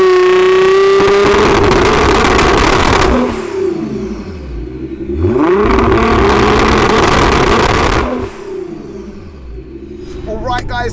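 Nissan R35 GT-R's twin-turbo 3.8-litre V6, built to about 1576 bhp, revved hard twice. Each time the pitch rises quickly and is held high for about three seconds, then drops back.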